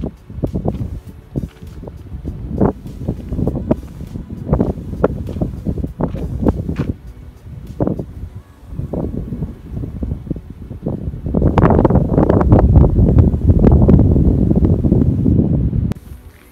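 Wind buffeting a phone's microphone in uneven gusts, with a long, louder gust in the last few seconds.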